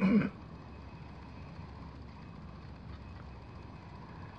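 A short cough or throat sound at the very start, then a steady low hum of background noise.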